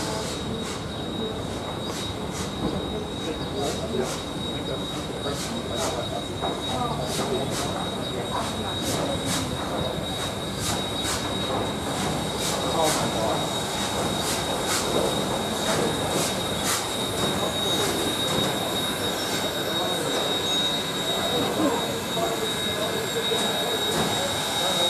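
NZR Ja-class steam locomotive 1271 drifting slowly in with its train. A steady high-pitched squeal of wheels on the rails runs under a regular light clicking of about one to two ticks a second. A hiss of escaping steam grows near the end.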